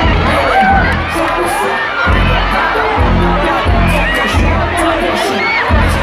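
Concert crowd screaming and cheering, many high voices rising and falling at once, over loud live music with a deep, pulsing bass.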